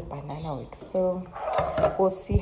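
A woman talking, with a short scrape and knock about three-quarters of the way in as a metal spray can is picked up off a stone countertop.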